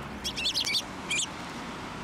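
Eurasian tree sparrows chirping: a quick run of several high chirps in the first second, then a single chirp just after a second in.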